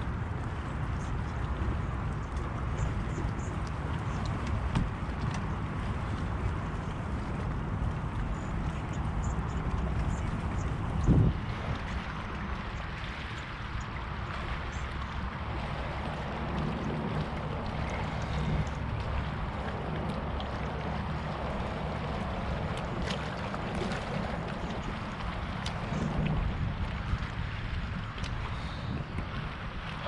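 Steady wind on the microphone with water lapping and sloshing at the edge of a floating dock, and a single thump about eleven seconds in.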